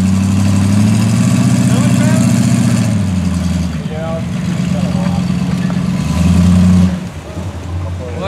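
Heavy 4x4 wrecker's engine working under load as it tows a dead Jeep CJ through mud on a strap: it pulls harder about a second in, eases off about three seconds in, then pushes hardest just before dropping back near the end.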